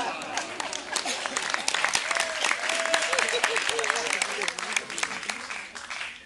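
Audience applauding in a hall, dense clapping with a few voices mixed in, thinning out near the end.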